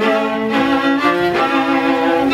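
Two violas playing a bowed duet: a melody moving note to note over a second, lower sustained part.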